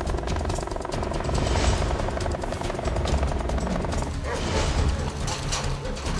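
Closing theme music of a TV news programme, dense and rhythmic with a strong pulsing low end.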